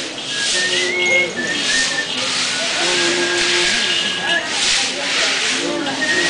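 Repeated swishes, about one a second, of pilgrims' hands and hand pads sliding along prostration mats and boards in full-length prostrations, with voices murmuring underneath.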